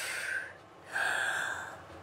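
A man's loud, forceful breaths through the mouth: two noisy, hissing breaths, the first fading about half a second in and the second lasting most of a second.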